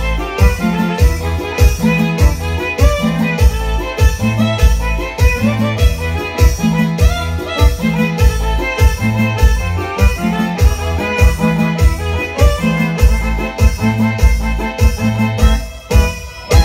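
Live instrumental music from a Korg keyboard: a violin-like lead melody over a steady, repeating bass beat. The music dips briefly right at the end.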